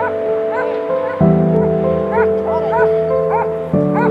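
Avalanche rescue dog in a snow hole giving a string of about eight short, high yips, over background music.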